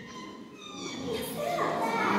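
Children's voices in a school gym: a brief lull, then several young voices pick up again about a second in.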